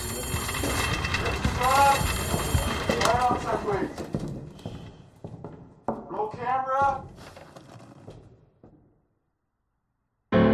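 A voice, or voices, over background noise, with a few short rising-and-falling calls, fading out about nine seconds in. No music plays.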